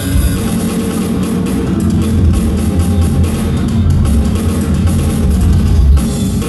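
Live rock band playing loud: electric guitar, bass guitar and drum kit together, with strong deep bass and steady drum and cymbal hits.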